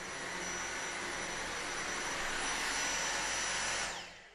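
Dyson V6 cordless vacuum running: a steady rush of air with a thin, high, constant whine from its small high-speed motor, fading out at the very end.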